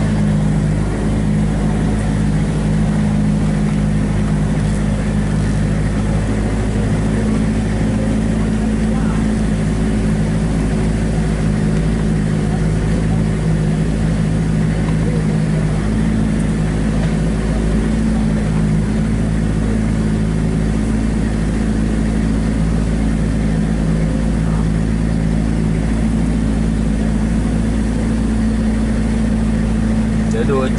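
Vehicle engine running steadily at low speed, heard from inside the cab as it crawls along a rough dirt track: a low, even drone that neither rises nor falls.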